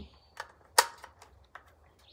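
A .300 Blackout cartridge being pressed into an AR-15 magazine: one sharp click a little under a second in, with a few fainter clicks around it.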